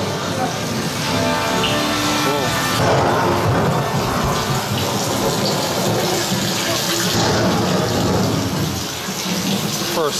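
Dark-ride show audio over speakers: orchestral soundtrack music under a steady rush of water-like effect noise.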